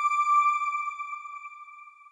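A television channel's logo sting: a single sustained electronic chime tone that fades away steadily.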